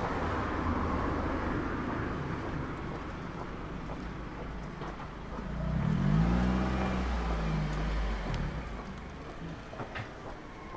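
A motor vehicle's engine running close by: a steady low rumble that swells about halfway through, with a brief rise in pitch like a light rev, then eases off near the end.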